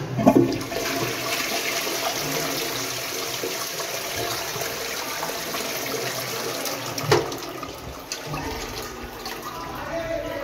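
A Roca Meridian toilet flushed from its concealed Geberit cistern, washing candy wrappers down the drain: a sudden rush of water that runs steadily for about seven seconds. A short knock comes about seven seconds in, and then the flow runs on a little quieter.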